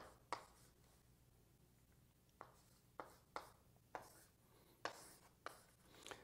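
Writing by hand: about eight faint, sparse taps and short strokes of a writing tool on a surface, over near silence.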